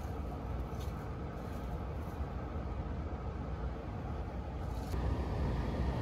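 Small brush scrubbing inside a PVC condensate drain pipe to loosen black mold buildup, over a steady low rumble.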